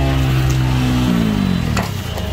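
A motorcycle engine held at steady revs, its pitch sagging as it dies away near the end, with a sharp knock just before it stops.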